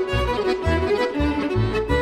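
A violin, accordion and double bass trio playing: the violin carries the melody over the accordion, while the double bass is plucked in short notes about four a second.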